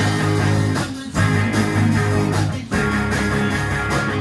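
Three-piece rock band playing live: electric guitar, bass guitar and drums, with two brief breaks in the playing, about a second in and near three seconds.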